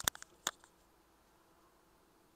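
A quick cluster of sharp clicks and taps, the two loudest about half a second apart, from something being picked up and handled on a desk.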